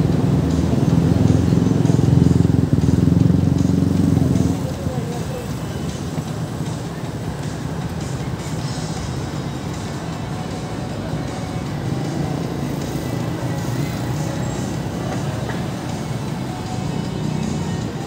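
Busy city street at night: a vehicle engine passes close by, loud for the first four seconds or so and then fading. After that comes a steady hubbub of people talking, traffic and music.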